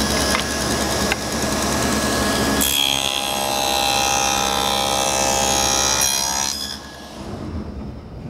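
Table saw fitted with a quarter-inch dado blade, running and cutting a groove for a drawer bottom along a plywood drawer part; the sound thickens and brightens while the blade is in the wood, about three seconds in, then falls away sharply near the end.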